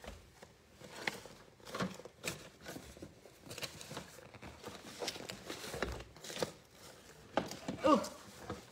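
Rummaging through a cluttered drawer: scattered light clicks, knocks and rustles of small objects being pushed aside, about one every second or so.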